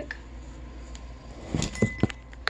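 Handling noise from a smartphone that is recording: a low steady hum, then near the end a quick cluster of light knocks and clicks as the phone is picked up and tipped.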